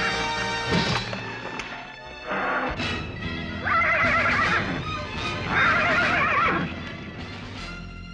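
A horse whinnying three times over background music: a short whinny, then two longer, wavering ones.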